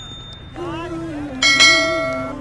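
Notification-bell chime sound effect from a subscribe-button animation: a sudden bright ding about one and a half seconds in that rings on and fades. Background music with a low melody runs under it.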